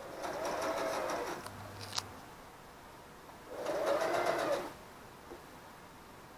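Electric sewing machine stitching in two short runs of about a second each, its motor speeding up and then slowing down each time. A single sharp click falls between the runs.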